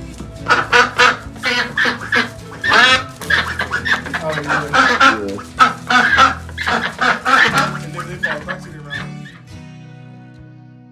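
Domestic white ducks quacking loudly and repeatedly, about one to two quacks a second, stopping shortly before the end. Soft background music comes in under the quacks partway through.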